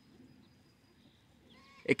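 Near silence of open pasture air, with a faint, short bird call about one and a half seconds in.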